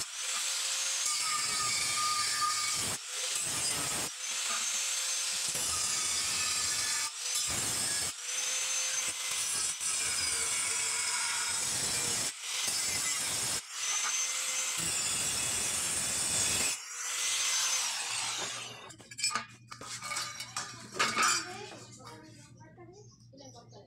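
Electric angle grinder with an abrasive cutoff disc cutting through rectangular steel tubing: a loud, harsh grinding with the motor's steady whine heard between cuts, breaking off briefly several times. Near the end the grinding stops and a few metallic knocks follow as the steel tubes are handled.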